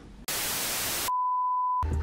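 An edited-in sound effect: a burst of loud white-noise static lasting under a second, followed by a single steady high beep tone that cuts off abruptly near the end.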